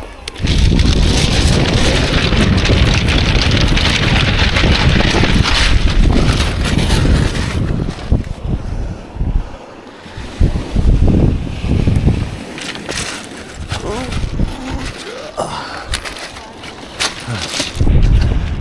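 Bicycle tyres rolling over a shingle beach of loose rounded pebbles, with wind rumbling on the microphone. The noise is strong and continuous, then drops away about eight seconds in and comes back in shorter surges.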